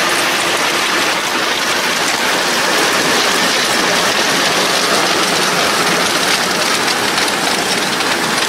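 Tractor towing a Marshall muck spreader with its rear beaters throwing out manure: a loud, steady hiss and patter of muck, with the tractor's engine faintly underneath.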